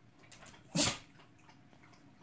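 A small dog gives one short bark about three-quarters of a second in, at a plush slipper being pushed at it.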